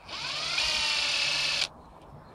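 Panasonic cordless impact driver run briefly with no load: the motor whine rises as it spins up, holds steady, and cuts off suddenly after under two seconds. It is turning a Wera Impaktor bit holder whose inner hex has stripped.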